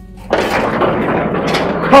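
Black steel gate being opened: a noisy metal rattle and scrape that starts a moment in and lasts about a second and a half.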